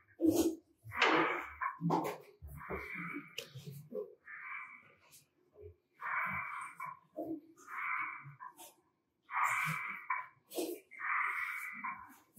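Hard, fast breathing through an oxygen breathing apparatus (OBA) facepiece: a hissing rush of air about every one and a half seconds, about seven breaths in all. Short knocks of hands and boots on steel ladder rungs sound in the first two seconds.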